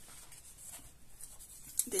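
Soft paper rustling and brushing as a coloring book's pages are turned and smoothed by hand, in short faint scrapes.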